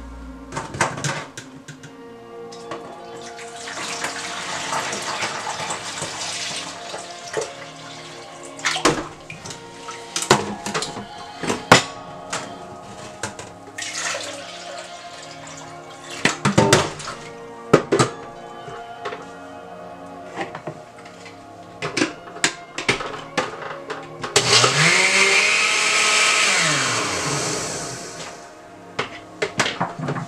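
Background music plays throughout, over clinks and knocks of a metal sieve against plastic tubs and juice being poured. Near the end a countertop blender runs for about three seconds, its motor whining up and then winding down as it blends June plum and ginger juice.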